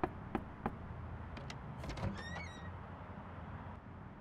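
Three sharp knocks on a wooden front door, then the latch clicks and the door swings open with a short, falling creak of its hinges.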